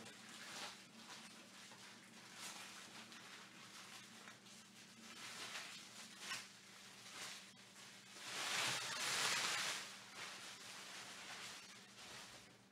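Quiet rustling and handling noises from trading cards and their wrappers, over a faint steady hum, with a louder rustling burst lasting about two seconds near the end.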